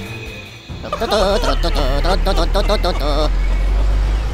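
Comic bleat-like voice sound effect, its pitch wobbling up and down in quick repeated waves for about two and a half seconds, over background music with a low steady drone.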